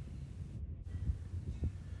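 Low rumble of wind on the microphone, with a couple of faint low thumps about a second in.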